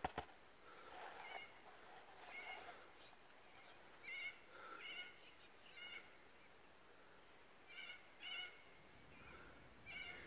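Faint bird calls: short, high chirps scattered through otherwise near silence, a few of them in quick pairs.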